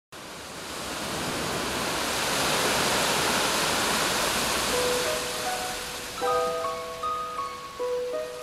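Rushing surf-like water noise swells and then fades away. About five seconds in, a soft electronic keyboard introduction enters with held single notes, then chords about a second later.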